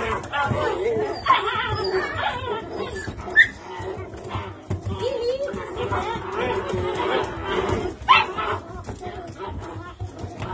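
A litter of Belgian Malinois puppies whining and yipping as they jump up for attention, with a few sharp, louder yelps about one, three and a half, and eight seconds in.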